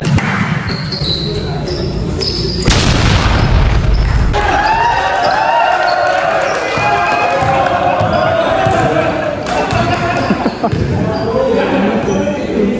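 Basketball bouncing on an indoor court floor during a game, with players' voices calling out across the echoing gym hall. About three seconds in there is a loud rush of noise lasting a second or so.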